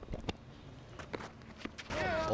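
Faint footfalls and a few scattered sharp knocks picked up by the ground microphones as the bowler runs in and delivers in a tape-ball cricket match.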